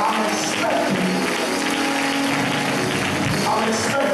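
Church music of held, sustained chords, with the congregation clapping along.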